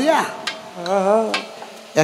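A man singing into a microphone: a short rising and falling phrase, then a held note with a wide, even vibrato about a second in, over a faint steady hiss.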